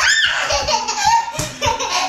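Laughter with a rising squeal at the start, over music with a steady beat.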